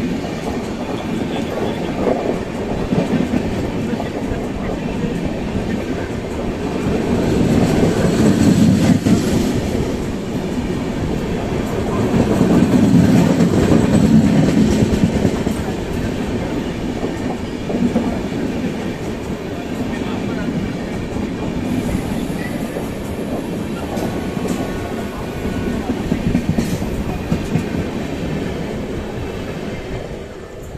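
Deccan Queen express coaches rolling past close by, wheels clattering over the rail joints. The rumble swells twice in the middle and eases near the end.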